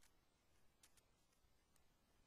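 Near silence: faint room tone with a few very faint short clicks.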